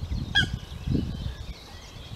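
A Eurasian coot gives a single short, sharp honking call about half a second in, over low rumbling noise.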